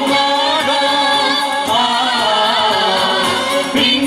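A mixed group of young women and men singing a Christian hymn together through microphones, with electronic keyboard accompaniment. The singing is sustained, with a short break and a new phrase starting just before the end.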